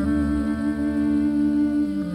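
A woman's voice holding one long sung note with a slight waver, over a low sustained bass note from the band.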